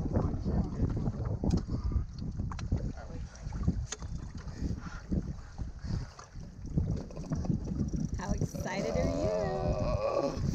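Wind buffeting the microphone and water slapping against a small boat's hull, an uneven low rumble throughout with a few faint knocks in the first few seconds; a voice comes in near the end.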